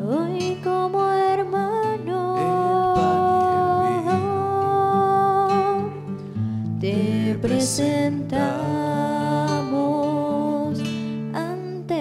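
Offertory hymn sung to acoustic guitar accompaniment, with long held, sustained sung notes.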